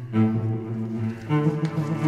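Solo cello playing a bowed melody, with a new note starting just after the beginning and another a little past halfway.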